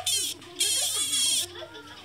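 A cicada caught in the jaws of an emerald tree skink, giving its harsh distress buzz in two loud bursts: a short one at the start and a longer one of almost a second from about half a second in.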